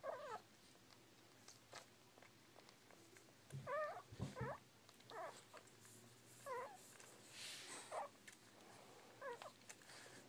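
Bull Pei puppies whimpering: about seven short, wavering squeaky cries, roughly a second apart, with a soft low bump near the middle.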